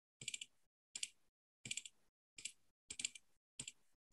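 Slow, faint typing on a computer keyboard: six single keystrokes, evenly paced about two-thirds of a second apart.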